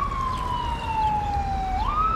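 A siren wailing over a low street rumble: its single tone falls slowly, then rises quickly near the end.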